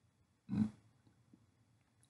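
A single brief throat sound from a man, about half a second in, amid near-silent room tone.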